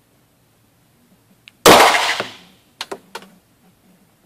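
A single shot from a SIG Sauer SP2022 9 mm pistol, ringing briefly off the walls of an indoor shooting range. Two short clicks follow about a second later.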